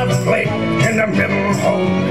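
Background music: a pirate-themed folk song with a country-style guitar accompaniment.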